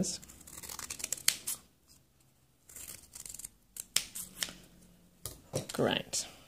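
Multi-bladed fringe scissors snipping through thin cardstock, cutting it into narrow strips, in a few short bouts of cuts separated by quiet pauses.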